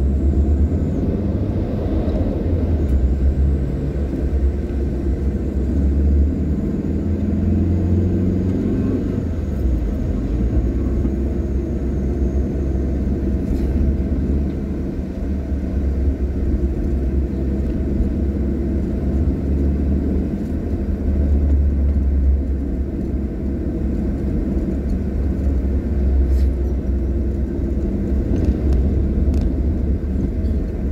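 Steady low engine and road rumble of a moving car, heard from inside its cabin.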